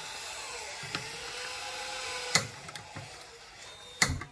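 Gas hissing from the stove burner under a popcorn machine's pot, with a faint whistle, then a sharp click a little past halfway and a few lighter clicks as the burner is lit; the hiss fades after the clicks.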